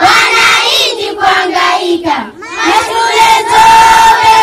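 Schoolchildren singing together in chorus, led by a boy on a microphone. About two and a half seconds in, they hold one long note to the end.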